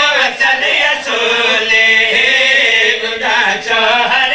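A man chanting a devotional qasida verse in long, held melodic lines, with a brief break about three seconds in.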